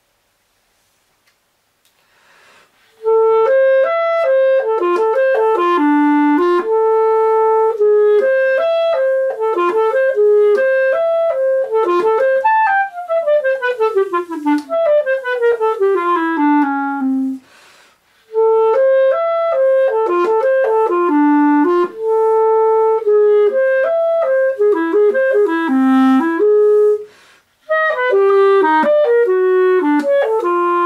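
Clarinet playing technical work, scale and arpeggio exercises: quick runs of notes up and down starting about three seconds in, with a long descending run in the middle and two short breaths between phrases.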